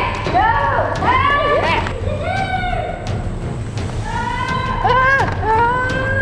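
Excited voices shrieking and exclaiming in short, pitch-swooping cries without clear words, over a low steady hum.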